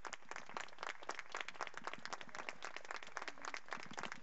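Audience applauding: many separate hand claps, moderately quiet and even.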